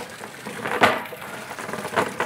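Cast net being lowered into a bait well: its lead weights clatter against the hard rim and drop into the water in a run of small rattles, with one sharper knock a little under a second in.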